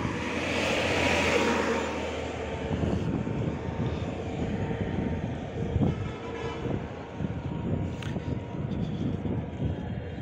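Road traffic noise: a heavy truck passes in the first couple of seconds, its tyre and engine noise swelling and fading, then a steady rumble of traffic on the expressway.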